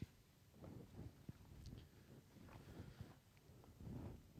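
Near silence: room tone with faint, indistinct low murmurs and a few small clicks.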